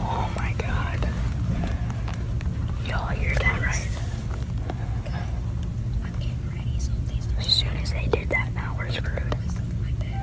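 Hushed, whispered voices in scattered snatches over a steady low hum.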